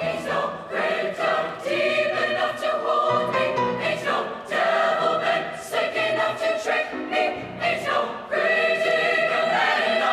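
Large mixed high-school choir singing together, phrase by phrase, with short breaks between phrases about three seconds in and again near the eight-second mark.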